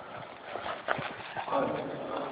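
A few sharp knocks, irregularly spaced, with faint voices in the background.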